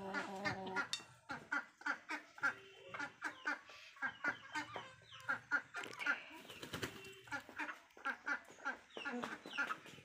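Hens and a rooster clucking while they feed, short broken calls scattered throughout, with many sharp ticks of beaks pecking grain from plastic and metal feed bowls.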